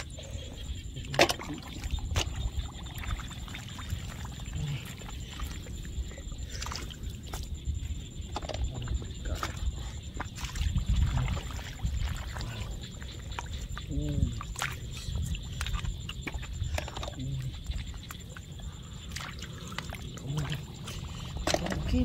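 Hands digging and feet wading in shallow, muddy water: sloshing and splashing, with scattered sharp clicks and a louder stretch of churning near the middle.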